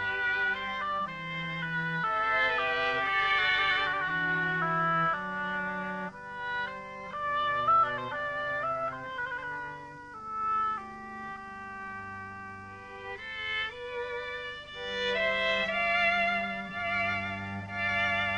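An oboe and a small string ensemble with violin and cello playing classical chamber music live. Held, singing melodic lines sit over string accompaniment, with a softer passage in the middle.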